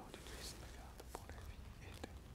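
Faint whispering: a voice praying under its breath, with a few soft small clicks.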